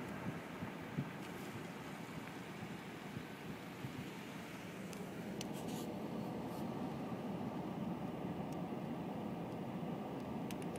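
Steady low rumble of a vehicle driving slowly over a dirt road, heard from inside the cab, with a few faint clicks and rattles about halfway through.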